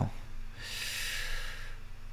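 A man's breath: one noisy breath out lasting about a second, with a faint steady hum underneath.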